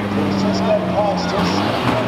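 Racing van engines running in a steady drone as a banger van passes close by, with voices audible over it.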